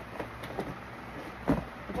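Quiet room with faint handling sounds and one short knock about one and a half seconds in.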